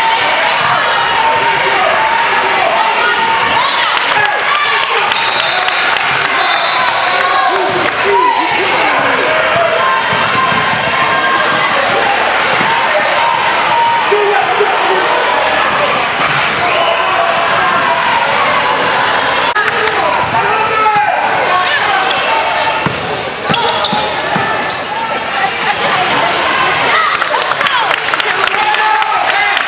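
Many overlapping voices of spectators and players echoing in a gym, with a basketball bouncing on a hardwood court now and then.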